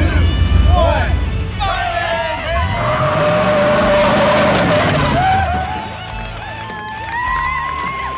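Men whooping and yelling from a pickup truck as it drives past, the truck's engine note rising and then falling away in the middle, with a long rising yell near the end.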